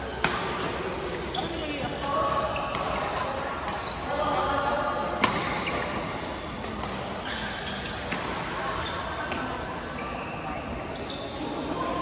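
Badminton rackets striking a shuttlecock in a doubles rally, a series of sharp cracks, the loudest just after the start and again just past five seconds, with fainter hits from neighbouring courts.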